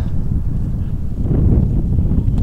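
Wind buffeting the microphone outdoors: a steady low rumble.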